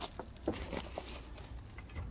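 A few light clicks and knocks of metal rear suspension parts being handled and offered up into position, most of them in the first second, over a steady low rumble.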